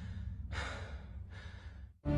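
A man breathing hard from exertion: several heavy breaths in and out in quick succession, over a low steady rumble.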